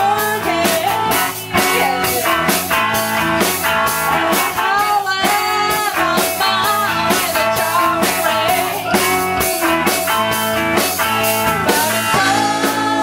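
A live band playing: a woman singing into a handheld microphone over electric guitars and a drum kit keeping a steady beat.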